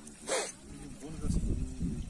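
A single short, sharp bark-like sound about a third of a second in, then people talking close by over a low rumble.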